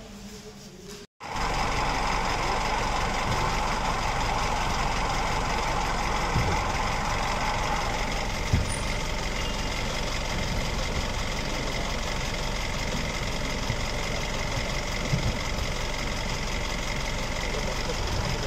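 Bus engine idling, a steady drone that starts abruptly about a second in, with a few short knocks scattered through it.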